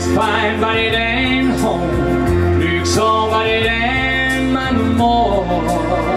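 Country-style music with guitar and a melodic lead line over a steady bass, played back as a backing track through the stage PA.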